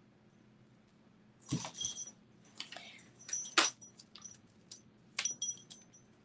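Metal necklace chain and charms jingling and clinking as they are handled. The sound comes as irregular clusters of small clicks and bright chimes, starting about a second and a half in.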